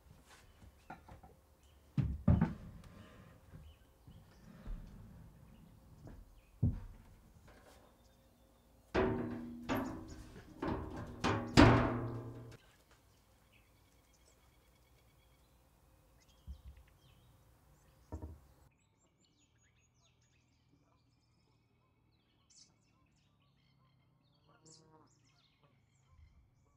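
A heavy Tasmanian blackwood slab being set down and shifted on plywood cabinets: a few dull thuds and knocks, then a louder run of ringing knocks about nine to twelve seconds in.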